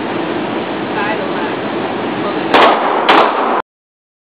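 Two pistol shots about half a second apart near the end, loud and sharp with a brief echo of the indoor range.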